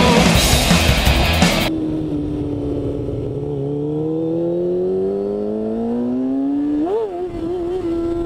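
Rock music for the first couple of seconds, then a stock 2014 Kawasaki Ninja ZX-6R 636's inline-four engine accelerating. Its pitch climbs steadily for about five seconds, flicks up and down briefly near the end, and then holds steady.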